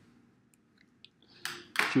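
A pause in a man's speech: faint room tone with a small click about a second in, then a breath, and his speech resumes near the end.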